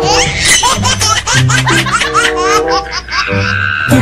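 High-pitched laughter, a quick run of short rising ha-ha bursts that stops a little before the end, over background music with sustained notes.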